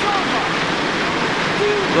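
Large arena crowd cheering steadily after a point is won, with a commentator's voice near the end.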